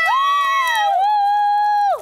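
High-pitched voices cheering in long held whoops. Two voices overlap at first. Then one holds a steady note and cuts off just before the end.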